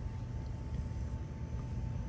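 Steady low background rumble with a faint steady hum. No distinct hiss or clicks stand out.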